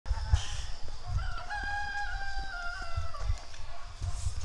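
A rooster crowing once: a single long call starting about a second in, holding its pitch and then dropping away at the end, lasting about two seconds. Low rumbling runs underneath.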